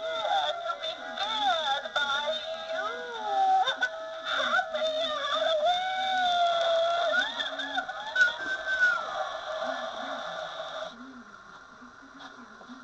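An animated Halloween witch prop's warbling electronic voice and spooky music, played back through a small portable DVD player's speaker. It cuts off about eleven seconds in.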